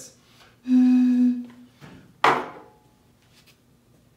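Air blown across the mouth of an empty glass root beer bottle, sounding one steady low note for about a second as the air column inside resonates in a standing wave. A short sharp exhale follows about two seconds in.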